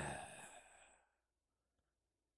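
The breathy tail of a man's voice fading out within the first second, then near silence.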